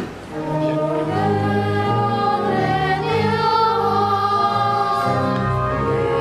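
Church choir singing a sung part of the Mass, carried over sustained low accompanying notes. The sound dips briefly at the start, and the singing comes back in about half a second in.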